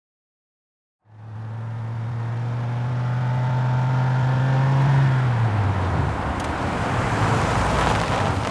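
A car engine running, coming in about a second in as a steady hum that grows louder and slightly higher for several seconds, then dropping in pitch about five seconds in into a rougher rumble.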